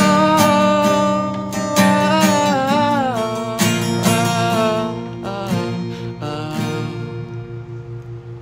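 Acoustic guitar strumming a few chords, each one left to ring, the sound dying away over the last few seconds as the song ends.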